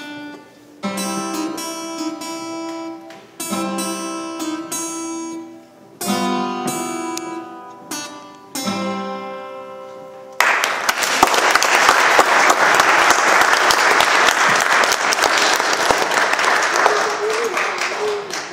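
Two acoustic guitars strum slow chords, each one struck and left to ring for a couple of seconds, closing out a piece. About ten seconds in, audience applause starts abruptly and goes on, louder than the guitars.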